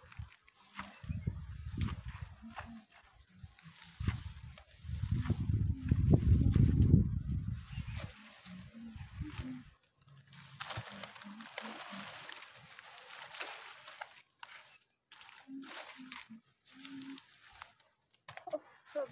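Long strap-leaved fodder plants rustling and being cut with a hand sickle, in short crackling snips and swishes. A loud low rumble runs from about five to eight seconds in.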